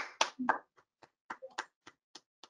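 Hands clapping in applause, heard through a video call: sharp separate claps about three to four a second, with dead silence between each.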